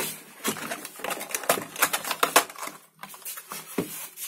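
Quick, irregular clicking and rattling of bottles and containers being handled on a fridge's door shelf, dense for the first few seconds and then sparse, over a faint steady low hum.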